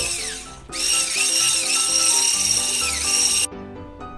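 Electric hand mixer running at high speed, its motor whining as the beater whips egg whites and sugar into a stiff meringue, over background music. The motor sound dips briefly near the start and cuts off abruptly about three and a half seconds in.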